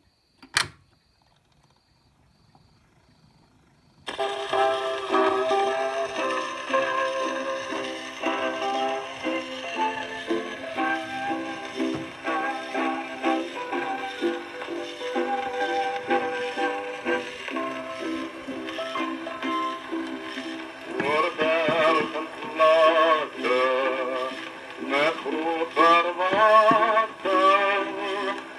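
Gramophone playing a Columbia 78 rpm record. The needle drops with a click, a few seconds of faint surface hiss follow, and then a band-limited, thin-sounding instrumental introduction begins. A man's voice comes in singing with a wavering vibrato about two-thirds of the way through.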